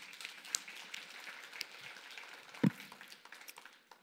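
Scattered applause from a congregation, with a single thump about two and a half seconds in.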